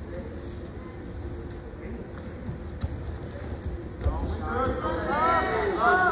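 Wrestlers scuffling on a gym mat, with a few low thuds and light taps of feet and bodies over the hum of a large hall. From about four seconds in, loud shouting voices take over.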